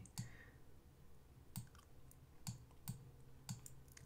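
A handful of faint, irregularly spaced clicks of a computer mouse against near silence.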